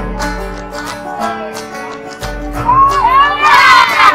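Music playing, with a group of women breaking into loud, high-pitched shouting and cheering about halfway in that grows loudest near the end as they huddle together.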